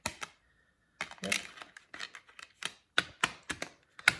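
Plastic Blu-ray case and disc hub clicking and tapping under fingers as the discs are handled: a quick irregular series of sharp clicks, after a brief near-silent moment about a second in.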